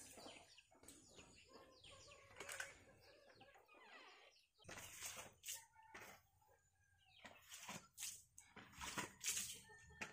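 Very quiet background with scattered short knocks and faint animal calls.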